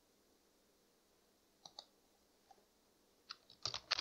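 Near silence broken by a few faint, sharp clicks of computer input: a quick pair about one and a half seconds in and a short cluster of four near the end.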